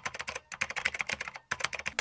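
Computer keyboard typing sound effect: a fast run of key clicks, broken by two brief pauses, near the start and about a second and a half in.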